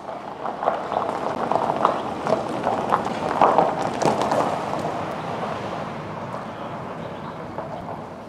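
Outdoor roadworks ambience: irregular clattering and crunching knocks, dense for the first four seconds or so, then fading to a steady background hum.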